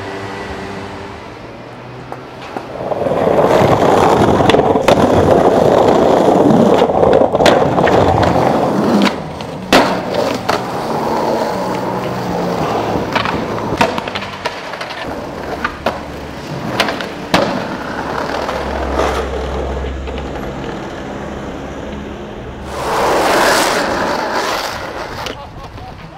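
Skateboard wheels rolling over paving, loud for about six seconds a few seconds in. Then a run of sharp clacks as the board pops, lands and hits the ground, and another stretch of rolling near the end.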